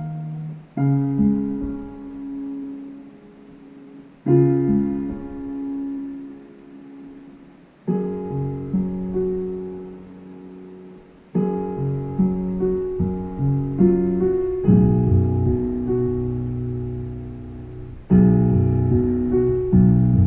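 Digital piano played slowly: chords are struck about every three and a half seconds and left to ring and fade. The playing grows busier from about halfway and louder near the end.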